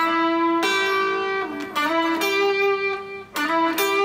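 Electric guitar, a Stratocaster-style solid body, playing a slow pentatonic lead phrase: held single notes that ring out, joined by string bends and slides that glide the pitch up and down.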